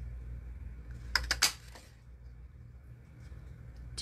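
Handheld craft paper punch (a small bloom punch) snapping down through stamped cardstock: a quick run of sharp clicks a little over a second in, over a low steady hum.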